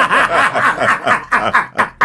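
A woman laughing in a quick run of short, repeated bursts.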